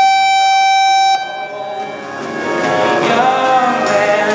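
A steady electronic horn tone that holds one pitch for about a second and a half and then cuts off suddenly: the signal for the show-jumping round to start. Country music plays underneath and carries on after it.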